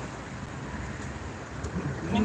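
Outdoor street background noise: a steady low rumble with no distinct events.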